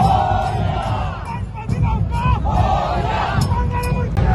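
A large crowd shouting and chanting together, with dhol-tasha drumming going on underneath.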